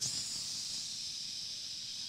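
A man making one long steady hiss, a "tsss" through his teeth into a microphone, imitating a flaming arrow being put out on water-soaked leather. It cuts off just before the end.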